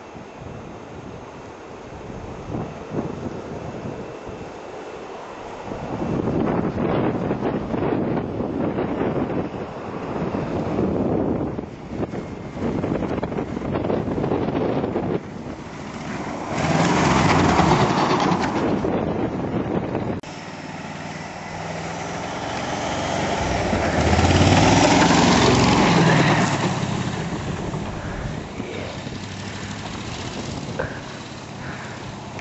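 Jeep CJ engine working under load as it drives a front snowplow blade through snow, with the rush of thrown snow. It comes close and grows loud twice, a little past halfway and again near the end, with an abrupt change in between.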